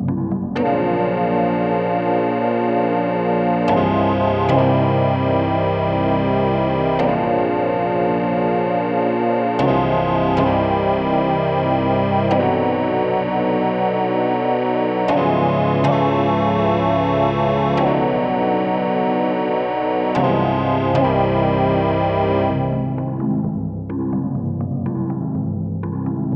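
Yamaha DX7IID FM synthesizer patch playing bright, buzzy sustained chords, a new chord struck every few seconds, with a regular pulsing shimmer in the tone. The sound is dry, without added effects.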